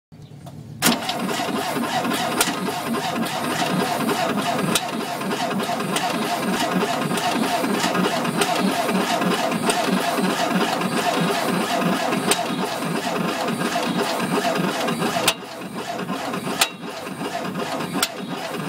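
Volkswagen engine with hydraulic lifters running with its valve cover off: the rockers and valves tick rapidly and evenly, and now and then a sharp hammering ping cuts through. The ping comes from a valve that sticks occasionally, which the owner suspects is either sticking on its return or a rocker binding on the end of the valve stem. The sound drops off sharply about fifteen seconds in.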